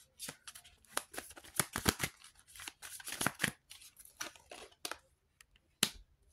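Tarot cards being handled and laid down on a wooden table: a quick run of papery clicks and snaps over the first three seconds or so, then a few scattered ones, with one sharper snap near the end.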